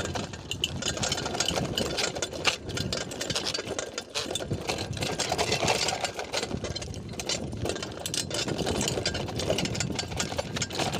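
Bicycle clattering and rattling continuously as it rolls fast over a rough dirt trail, with tyre noise on the loose, stony soil.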